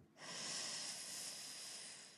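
A woman's long, deliberate inhale close to a handheld microphone, a steady hiss of air lasting about two seconds and slowly fading: the four-second breath-in of a calming breathing exercise.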